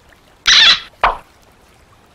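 Two short wet splashing noises, the second about half a second after the first and more abrupt, as foam sea-animal toys are handled and set down on wet mud at the water's edge.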